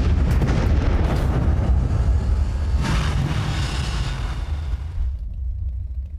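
Designed film sound effects of vehicle explosions: a heavy low rumble with crackling debris, a fresh burst about three seconds in, then dying away near the end.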